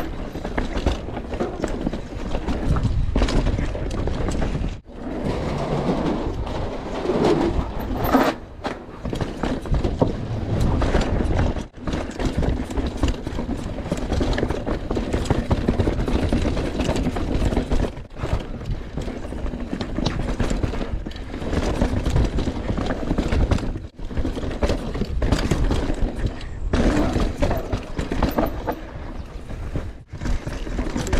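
Mountain bike descending a rough dirt forest trail: a continuous rumble of tyres over dirt and roots with wind on the microphone, broken by frequent knocks and rattles of the bike over bumps.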